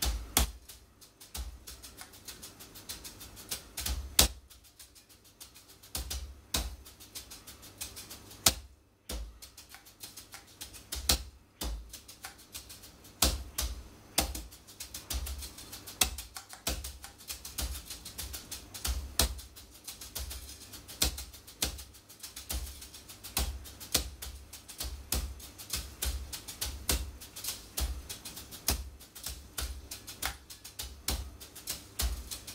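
Wire brushes played on a soft gum rubber practice pad: quick, dense taps and rolls of a rudimental snare drum solo, with louder accented strokes every second or so and a couple of brief breaks.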